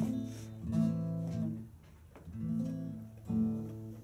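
Acoustic guitar playing a song's introduction: four slow strummed chords, each left to ring out.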